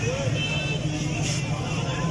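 Background chatter of voices over a steady low drone, with no distinct foreground sound.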